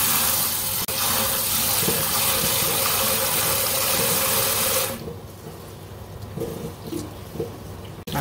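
Tap water runs steadily into a stainless steel bowl of split mung beans and stops about five seconds in. After that comes quieter sloshing as hands rub the beans in the water to wash them clean.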